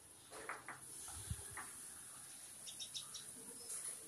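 Faint, short bird chirps, a few near the start and a quick run of high chirps around three seconds in, over a steady high hiss. A soft low thump comes about a second in.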